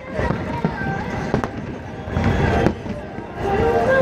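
Fireworks bursting, a few sharp bangs spread through the moment, under a background of people's voices.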